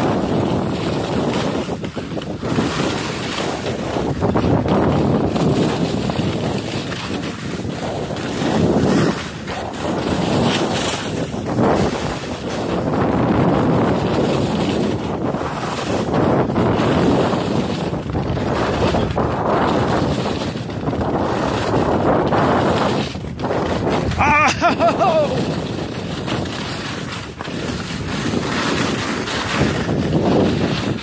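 Wind rushing over the microphone and skis scraping and hissing across hard snow during a fast downhill ski run, swelling and fading every second or two. About three-quarters of the way through, a brief high sound slides down in pitch.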